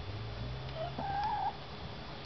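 A chicken giving one short, wavering, drawn-out call, a little under a second in, over a faint low hum.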